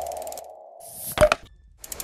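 Logo animation sound effects: a fading tone, then a rising whoosh that ends in a sharp hit about a second and a quarter in, followed by a rapid run of ticks near the end.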